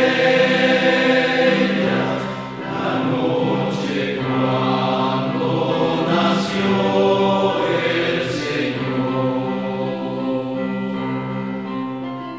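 A choir singing a slow hymn in long held notes: music during Communion at Mass.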